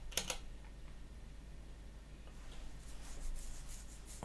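Computer keyboard keystrokes: two or three quick key presses right at the start as a terminal command is finished and entered, then faint room tone, with a run of light, faint clicks near the end.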